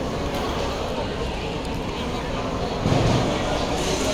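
Busy airport terminal hall: crowd chatter and general bustle of people moving about with luggage. A short, louder low sound comes about three seconds in.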